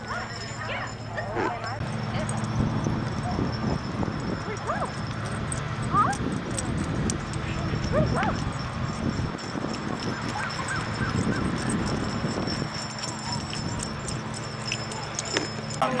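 Small terriers barking and yipping in short, scattered calls, with people talking in the background.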